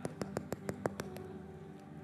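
An artificial lime tapped rapidly close to a microphone: about eight sharp clicks in just over a second. The hard, hollow-sounding taps show that the fruit is fake. A soft, sustained background music pad plays underneath.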